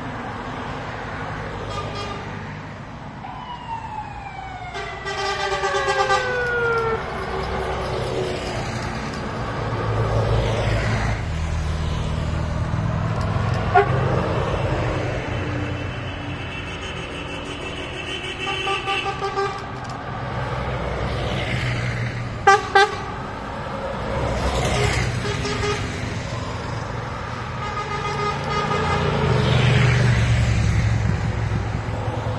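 Cars and Karosa 700-series buses driving past in a convoy, sounding their horns as they go by. One horn slides down in pitch as its vehicle passes early on, there are two short, sharp toots a little after the middle, and a bus engine's rumble builds near the end as it approaches.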